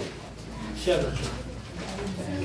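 Indistinct low voices over a steady low hum, with a short louder sound about a second in.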